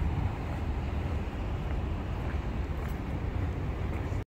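Steady low rumble of outdoor street ambience: wind on the microphone mixed with the hum of traffic.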